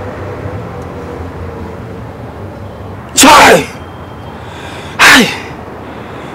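A man crying out in distress twice, two short loud sobbing wails about two seconds apart, each falling in pitch.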